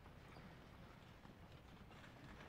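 Faint, irregular footsteps and shuffling of singers moving on a wooden stage and risers, over the near-silent hush of a large hall.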